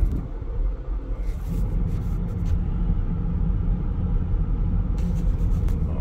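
Steady low rumble of road and drivetrain noise inside the cabin of a 2020 Chevrolet Equinox driving at speed, with a few faint clicks about a second and a half in and again near the end.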